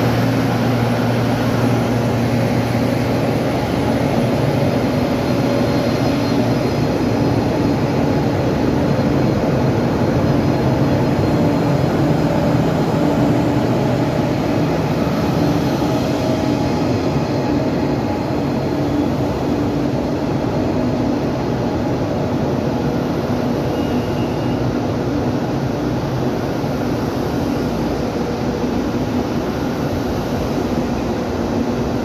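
A stationary KTX-Sancheon high-speed train's power car is running its onboard ventilation and auxiliary equipment, giving a steady, loud mechanical hum as the train stands waiting to depart. The lowest hum eases a little about halfway through.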